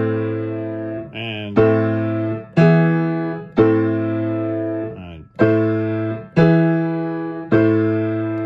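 Baldwin piano playing block chords, each struck and left to ring, in two groups of three about a second apart. Each group is a three-chord cadence that starts and ends on the tonic chord, with the bass line brought out.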